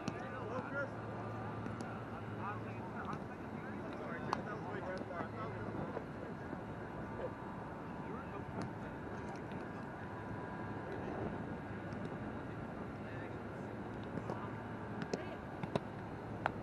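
Roundnet (Spikeball) play on an open field: a few short, sharp slaps of hands on the ball and off the net. Distant voices are heard under a steady low hum.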